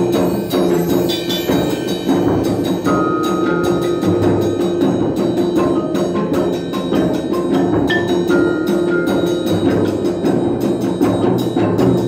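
Percussion ensemble playing live on marimbas, vibraphones and other mallet keyboard instruments with timpani: a dense, steady stream of quick mallet strokes, with a few held ringing notes over it.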